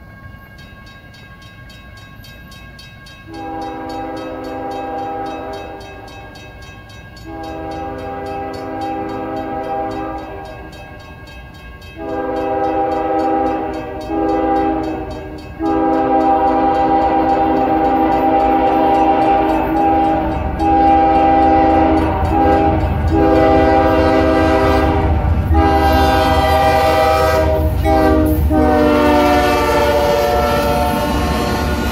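CSX GE ES40DC locomotive's multi-chime air horn sounding the grade-crossing signal. There are two long blasts, then two short ones, then a long blast held with brief breaks as the train closes in, its pitch dropping as the locomotive passes near the end. The locomotive's low engine and wheel rumble grows louder beneath it.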